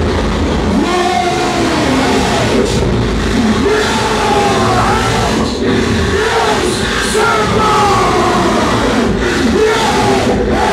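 Live harsh noise from electronics and effects: a loud, dense, unbroken wall of noise with many wavering, bending tones gliding up and down over it.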